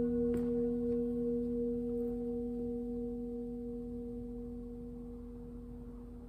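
Singing bowl ringing after a single strike, a low steady tone with higher overtones that slowly fades, marking the start of a time of meditation. A faint tap comes about a third of a second in.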